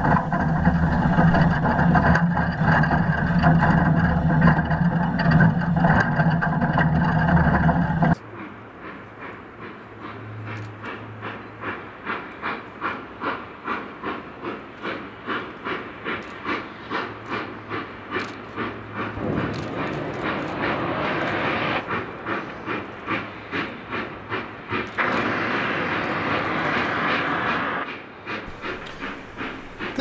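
Narrow-gauge Durango and Silverton steam locomotive. First comes a loud steady running rumble picked up by a camera fixed to the front of the engine. After a sudden change, the locomotive's exhaust chuffs come about two a second, growing louder as it works along the ledge, with a loud hiss of steam near the end.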